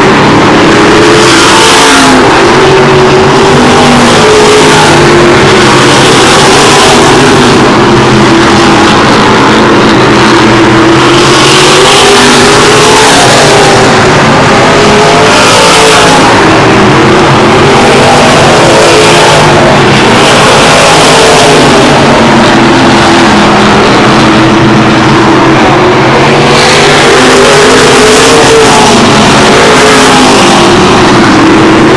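A field of modified race cars running laps on an oval track, several engines revving up and down together, with the sound surging every couple of seconds as cars pass close by. It is loud enough to overload the recording.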